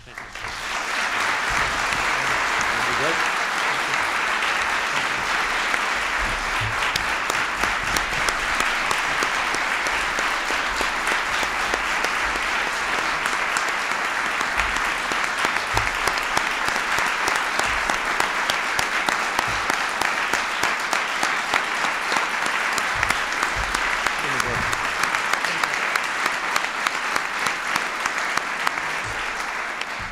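Audience applause, rising about half a second in and then holding steady.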